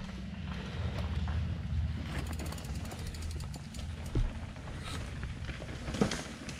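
Scott Gambler 720 downhill mountain bike rolling down a dirt singletrack: a steady low rumble from the tyres, with the rear freehub ticking fast while coasting. There is a single knock about four seconds in.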